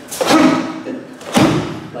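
Two sharp thuds about a second apart: karateka's bare feet landing hard on a padded training mat as they shift in, with the swish and snap of cotton karate uniforms on the strike and block.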